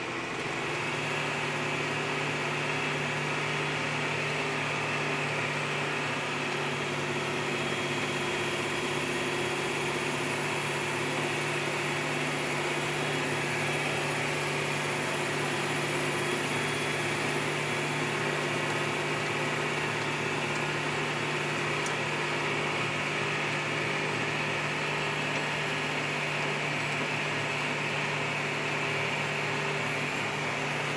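John Deere 8335 tractor's diesel engine running at a steady pace on the move, heard from inside the cab as an even, unchanging hum.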